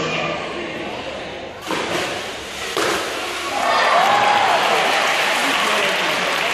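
A sea lion dives from a high platform into a pool, hitting the water with a sudden splash about two seconds in, followed by a second smaller splash; the audience then breaks into applause and cheering.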